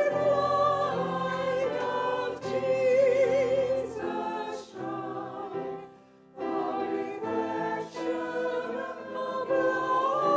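Mixed choir of men and women singing together with vibrato, in sustained phrases. There is a brief pause for breath about six seconds in before the singing resumes.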